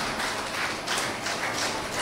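Audience applauding: a steady patter of many hands clapping.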